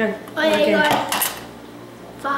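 The Pop-O-Matic dice bubble of a Trouble board game being pressed, with the die clattering briefly inside the plastic dome about a second in. A short voice comes just before it.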